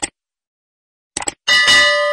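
End-screen sound effect: a short click right at the start, then two quick clicks about a second in. They are followed by a bright bell ding that rings on and slowly fades, the chime of an animated subscribe-and-bell button.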